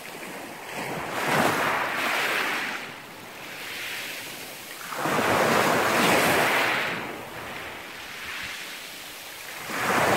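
Small sea waves breaking on a pebble beach, the surf rising and falling in three surges roughly four seconds apart: one about a second in, one midway and one starting near the end.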